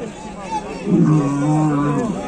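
Fighting bull bellowing: one long, low call at a steady pitch, starting about a second in.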